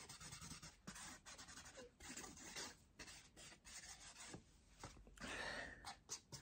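Marker pen drawing on card: faint, quick scratchy strokes and rubs of the tip across the surface.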